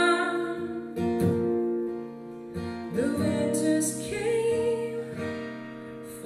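Steel-string acoustic guitar strummed alongside a mandolin, accompanying a woman singing, with fresh chords struck about a second in and again about three seconds in.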